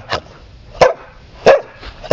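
Small shaggy dog barking: three short, sharp barks about two-thirds of a second apart.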